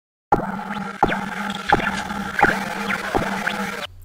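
Electronic intro sting of glitchy sound effects: a steady hum struck by sharp hits about every 0.7 seconds, each with a short pitch sweep, cutting off suddenly near the end.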